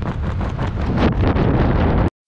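Loud, steady wind rushing over the microphone of a wrist-mounted camera, with the skydivers under an open parachute canopy.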